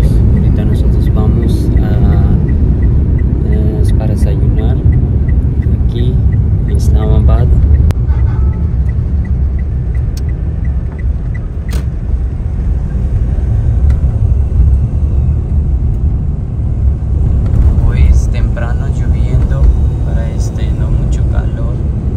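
Steady low rumble of a car driving, heard from inside the cabin, with brief snatches of voices several times.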